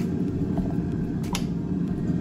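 Air fryer running with a steady low whir while it cooks, with a few light clicks and one sharper knock about a second and a half in as a teaspoon and a plastic mayonnaise jar are handled on the counter.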